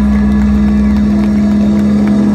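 Loud live psych/space-rock band music: a steady low drone, most likely from a synthesizer, held over a deep bass note. Faint sliding tones run above it.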